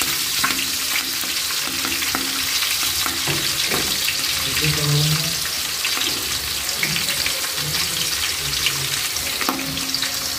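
Green chillies sizzling steadily in hot oil in a large metal pot, with a metal spoon stirring and scraping against the pot at the start.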